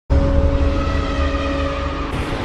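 Logo intro sound effect: a loud deep rumble with steady held tones above it, cutting in suddenly at the start.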